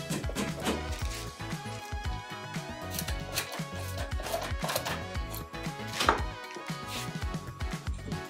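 Hammer knocks and handling of particleboard furniture panels during flat-pack desk assembly, a string of sharp taps with the loudest about six seconds in, over background music.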